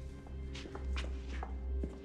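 A few footsteps of people walking away across a room, over low, sustained background score.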